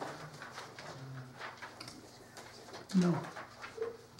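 Sheets of paper rustling as report copies are handed around a meeting table, with faint low murmuring in the room and a man answering "No" about three seconds in.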